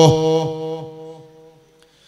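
A man's long held chanted note breaks off, and its tone dies away over about a second and a half in repeating echoes from the sound system's echo effect.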